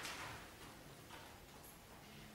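Very quiet pause with no music playing: faint rustles and small clicks as the clarinettists handle the sheet music on their stands.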